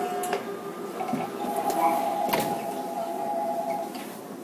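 Seoul Metro 4000-series subway car running in a tunnel. A steady high whine comes in about a second and a half in and cuts off near the end, with a sharp click about two seconds in.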